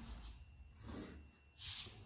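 Faint scratch of a pencil drawn along a plastic ruler on paper, in two short strokes, the second louder, near the end.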